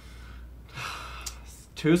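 A man's short, breathy exhale, like a sigh, about a second in, with a spoken word starting near the end.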